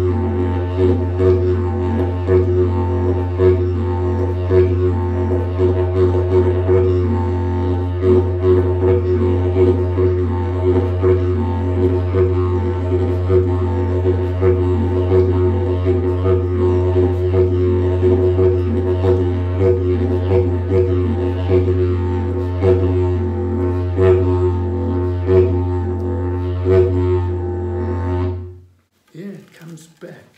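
Mago, a short western Arnhem Land didgeridoo pitched in F, played as a continuous drone with bright overtones and quick rhythmic accents (the 'dits') woven through it. The drone stops abruptly about 28 seconds in.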